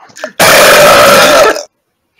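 A loud, harsh vocal noise made right into a microphone, overloading it for about a second, just after a short laugh. It starts and stops abruptly.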